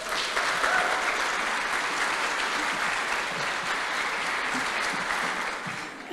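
An audience applauding steadily after a story ends, the clapping tailing off near the end.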